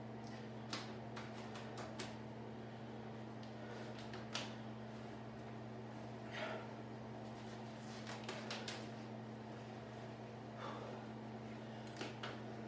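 A man straining to bend a steel bar by hand: scattered light clicks and taps, with a cluster about two-thirds of the way through, and a few breaths, over a steady low hum.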